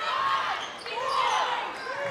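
Basketball game sound in a gym: a ball being dribbled on the hardwood court under a murmur of crowd and bench voices with a few faint shouts.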